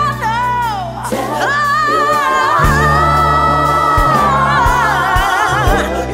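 Song: a woman's sung vocal with vibrato, holding one long note through the middle, over bass and drum beats.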